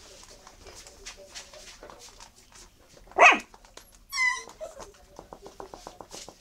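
Eight-week-old miniature schnauzer puppies at play: light scuffling, then a loud sharp yip about halfway through, followed at once by a wavering high-pitched squeal.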